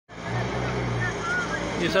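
A vehicle engine running with a steady low hum, with faint distant voices over it. A man starts speaking right at the end.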